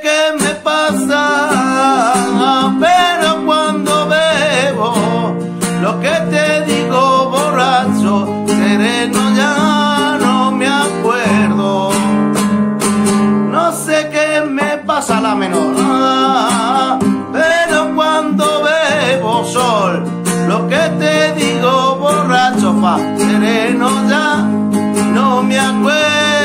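Nylon-string classical guitar strummed in a rumba rhythm, with a man singing along over the chords.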